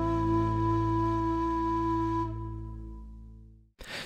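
Final held notes of a demo track played on the Ample Sound Dongxiao, a sampled Chinese end-blown bamboo flute, over a steady bass. It fades out over the last second and a half into silence.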